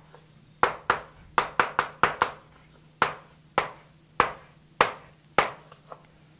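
Chalk tapping and scratching on a blackboard as a matrix is written: about a dozen short, sharp taps at uneven intervals.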